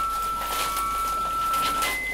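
Defibrillator sounding a steady electronic tone as it charges. The tone stops near the end and a higher steady tone begins, the signal that it is charged and ready to shock.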